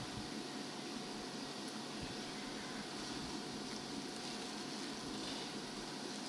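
Steady low hiss of room noise with a faint, even hum running through it.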